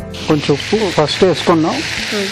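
Chicken pieces frying in a pan with paste and spices, a steady sizzle that comes in suddenly at the start.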